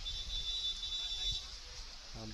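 A steady high-pitched electronic beep, held for about a second and a half before cutting off.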